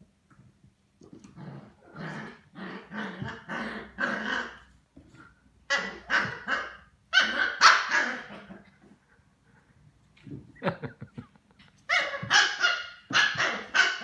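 Small dogs barking and growling during a play fight: quick runs of short barks, with a brief lull near the middle.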